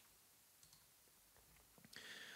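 Near silence with a few faint computer clicks.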